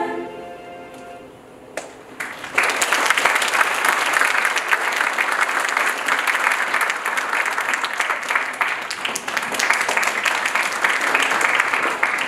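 A girls' choir's last held chord dying away, then, about two and a half seconds in, audience applause that goes on steadily.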